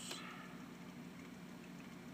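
Faint room tone with a low steady hum, in a pause in unaccompanied male singing; a brief soft noise right at the start.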